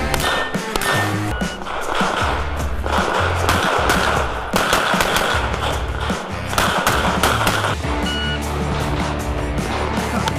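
Music track with a steady beat, and over it strings of rapid pistol shots fired while running a practical-shooting competition stage.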